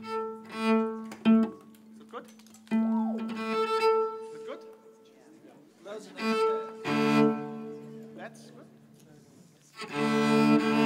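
Cello being tuned to a keyboard's reference note: short bowed notes on the strings over a held pitch, in bursts with pauses between. A lower string joins about seven seconds in.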